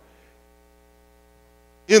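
Faint, steady electrical mains hum from a microphone and sound system: a few even, unchanging tones. A man's voice starts just at the end.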